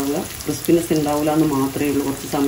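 Spiced potato slices frying in oil in a non-stick pan, sizzling as a metal spatula turns them, under a speaking voice that is the loudest sound.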